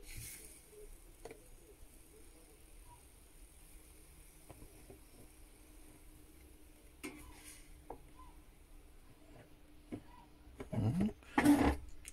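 Faint soft knocks and clicks as raw chicken wings are set by hand onto the grill grate in the basket of a JVC JK-MB047 air fryer, over a faint steady hum. Near the end, a short louder murmur of a man's voice.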